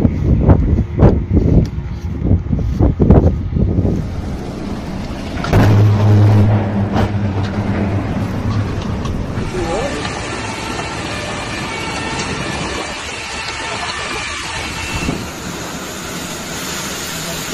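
Loud uneven bursts of noise with voices for the first few seconds, a low hum for a few seconds after that, then from about ten seconds in a steady rush of storm wind and heavy rain.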